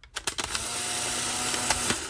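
A few clicks, then a steady hissing whir with a faint hum for about a second and a half: a tape recorder (magnétophone) switched on and running, used as a sound effect.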